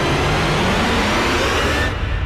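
Cinematic intro sound effect: a loud, noisy swell with a low rumble under it that builds and then cuts off sharply near the end, leaving only the rumble.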